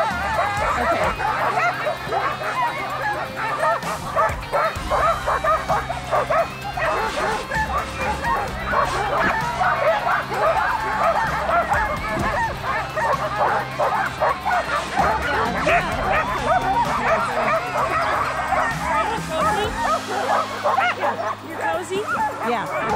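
Hitched sled dogs barking and yipping in a continuous, overlapping chorus, with some whining. This is the excited clamour of a team waiting in harness to run.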